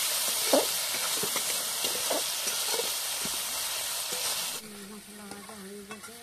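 Spiced masala sizzling in oil in a metal kadai, with a metal spatula scraping and knocking against the pan as it is stirred, a stroke about every half second to a second. About four and a half seconds in, the sizzling cuts off abruptly.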